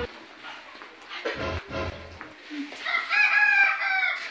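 A rooster crowing once, a long drawn-out crow in the last second or so.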